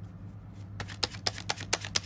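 A deck of tarot cards being shuffled by hand: a quick, uneven run of sharp card snaps that starts about a second in.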